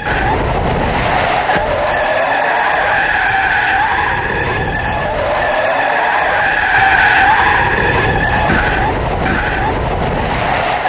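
A car skidding out of control, its tyres screeching in one long, loud skid whose pitch wavers up and down, over a low road rumble.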